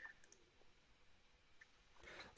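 Near silence: faint room tone in the pause between speakers, with one small faint click right at the start.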